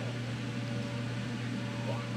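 Steady low hum with a faint even hiss, as of a running appliance or ventilation in a small room.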